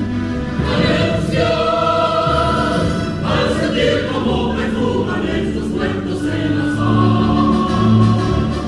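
A mixed choir of men's and women's voices singing together in sustained, shifting chords.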